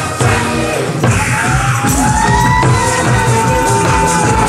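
Live janggu (Korean hourglass drum) drumming with two sticks over a loud backing track with a steady beat. About a second in, a long held note slides up and holds over the music.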